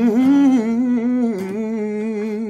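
A man's voice singing a wordless, hum-like passage: long held notes with vibrato that dip and settle about a second and a half in.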